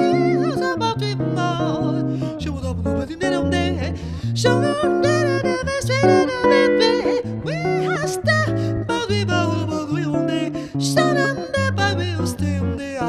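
A woman singing a bossa-style jazz melody over an archtop electric jazz guitar playing chords and a moving bass line.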